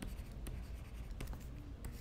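Digital stylus writing on a tablet surface: faint scratching with a few light tapping clicks as the strokes are made.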